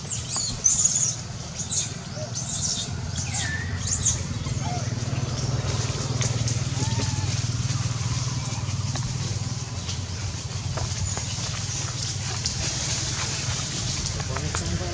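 Several short, high-pitched squealing calls in the first four seconds, one sliding down in pitch, over a steady low rumble with a few light rustles.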